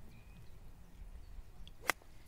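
A single sharp click of an 8-iron striking a golf ball, near the end.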